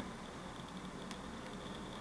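Quiet room hiss with a faint click right at the start and a fainter one about a second in, from a smartphone being handled.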